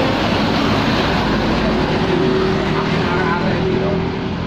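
Motor vehicles passing close on the road: a loud, steady rush of tyre and engine noise, with an engine note coming through more clearly in the second half.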